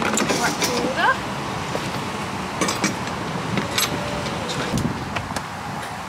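Scattered knocks, clicks and a short rising creak from a horse lorry's loading ramp and fittings as someone climbs the ramp into the lorry.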